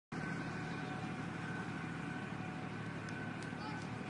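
Steady outdoor background noise with a low rumble, and faint voices near the end.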